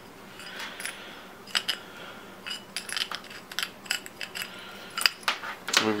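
Light metallic clicks and clinks of small metal parts being handled on a Technics 1200 turntable's opened underside: a scatter of separate taps, more of them in the middle and near the end.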